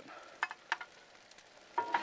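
Stainless-steel scoop scraping and clicking against the steel griddle top as it scoops up pasta, with a few sharp clicks and a louder scrape near the end. The food gives a faint sizzle on the hot flat-top underneath.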